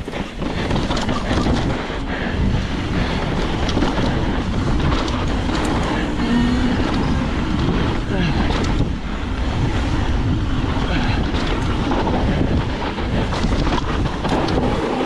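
Wind rushing over the camera microphone, mixed with mountain bike tyres rolling over rocky dirt trail on a fast descent. Scattered clicks and knocks come from the bike rattling over rough ground.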